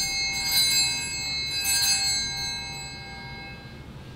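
Altar bells rung at the consecration of the host: bright, high metal ringing struck in strokes about a second apart, fading out near the end.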